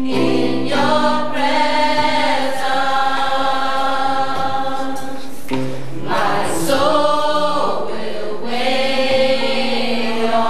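Youth gospel choir singing in parts, holding long sustained chords phrase by phrase with brief breaks between phrases.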